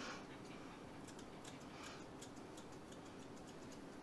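Thinning shears snipping through a dog's tail hair: a quick, irregular run of faint clicks, several a second, starting about a second in.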